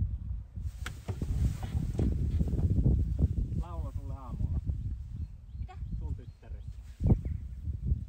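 Steady low rumble of wind and handling noise on a phone's microphone outdoors, with a brief voice sound about four seconds in and a single sharp knock about seven seconds in.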